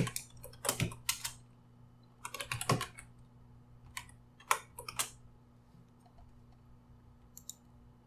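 Typing on a computer keyboard: quick bursts of keystrokes that stop about five seconds in, then one faint click near the end.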